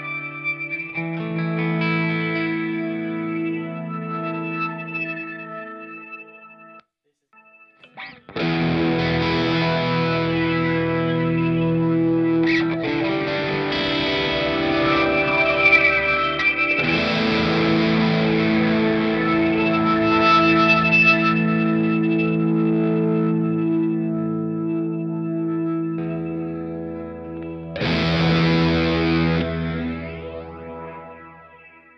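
Electric guitar played through an overdrive pedal into a TC Electronic Hall Of Fame 2 reverb. Chords ring out with long reverb tails, then stop briefly about seven seconds in. After that, louder, dirtier strummed chords sustain and swell, and another chord is struck near the end.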